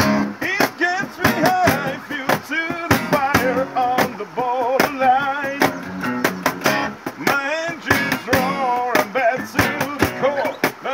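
Several acoustic guitars, one of them nylon-strung, strummed together in a steady rhythm while a man sings a wavering melody line over them.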